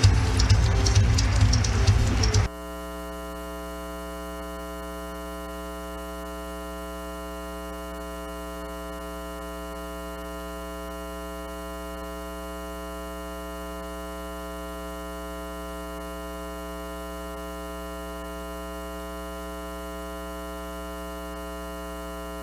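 Audience applause over loud music for about two seconds, then a sudden cut to a steady electronic hum made of many fixed, unchanging tones that holds to the end.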